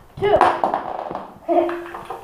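Mostly speech: a child's voice counting down for a Beyblade launch, one word and then another about a second later.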